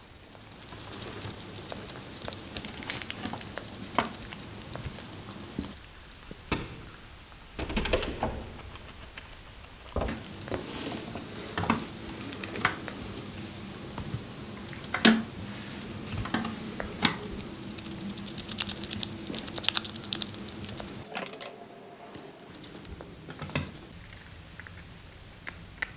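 Chipmunk eating pomegranate seeds and moving about a plastic tray: irregular small clicks, taps and nibbling sounds, with one louder click about midway.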